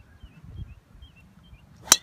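Driver club head striking a golf ball off the tee: a single sharp crack near the end.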